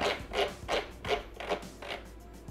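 Bimby (Thermomix) TM6 selector dial being turned to set the cooking time: a series of about six soft clicks, roughly three a second.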